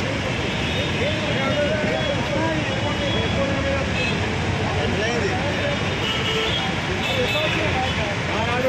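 Steady roadside traffic noise with several people talking in the background.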